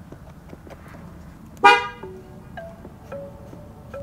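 Pickup truck horn gives one short toot, set off by pressing an adhesive emblem cover onto the steering-wheel horn pad, with faint handling noise around it.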